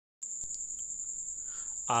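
A steady, high-pitched whine that starts just after the beginning and holds without a break, with a faint click or two; a man's voice begins right at the end.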